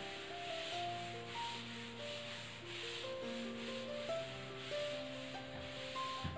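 A board duster wiping chalk off a chalkboard, rubbing back and forth in a steady rasp at about two strokes a second.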